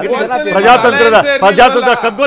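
Men's voices talking loudly over one another in a heated studio debate.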